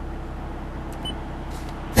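Scion tC's four-cylinder engine idling, a steady low hum heard inside the cabin, with a faint click about halfway through.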